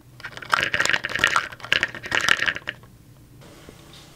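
Handling noise: rustling and light clattering, about two seconds long, starting about half a second in and dying away to a low background.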